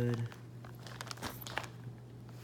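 Light handling noise from a turbocharger being held and turned by hand: scattered small clicks and crinkles over a steady low hum.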